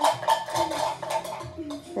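Rapid light metallic clinking, several clicks a second, over a faint steady ringing tone.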